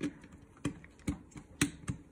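Five short, sharp plastic clicks, irregularly spaced, as Snap Circuits parts are handled and pressed onto the plastic base grid. The loudest click comes about one and a half seconds in.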